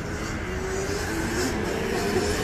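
A small motor vehicle running on a city street, a steady drone that wavers slightly in pitch over street noise.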